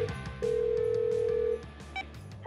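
Telephone ringing tone of an outgoing call: a steady tone that stops briefly, then sounds again for about a second, over background music.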